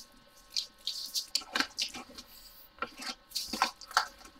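Clear plastic strip storage containers full of diamond-painting drills being handled and slid into a fabric carry case: a string of irregular light plastic clicks and knocks.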